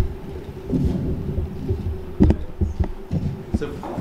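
Microphone handling noise: dull thumps, rubbing and a few sharper knocks as the mic is worked against its stand and clip, heard through the hall's PA over a steady low hum. The sharpest knocks come right at the start, a little past halfway and near the end.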